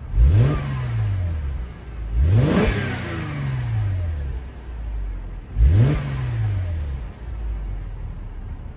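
2007 Mercedes-Benz E350's 3.5-litre V6 exhaust, revved three times from idle: each throttle blip rises sharply in pitch and falls back to idle over about a second and a half. The blips come near the start, about two seconds in and about five and a half seconds in, with the engine idling between them.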